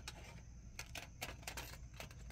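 Faint, scattered light clicks and rattles of small objects being handled while searching for a yarn clip.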